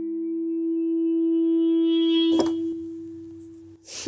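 Software synthesizer pad from Arturia Analog Lab played on a MIDI keyboard: one sustained note held, swelling and growing brighter as its upper overtones open up, then fading out near the end. About two seconds in, a short rustle with a soft thump.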